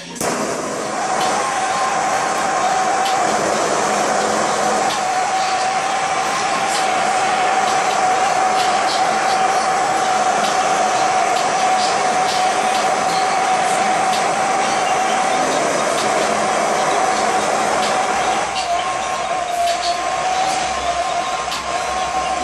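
Handheld butane torch lit at the start and burning with a loud, steady hiss and a constant whistling tone, heating the nail of a dab rig.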